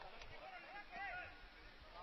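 Faint outdoor ambience of a football match on the pitch, a low steady hiss with a faint distant voice calling about half a second to a second in.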